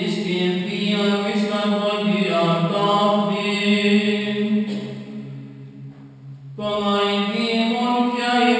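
A man's voice chanting Greek Orthodox liturgical chant in long, held notes. About five seconds in the melody fades, leaving a single low note held alone for a second or two, and then the chant picks up again.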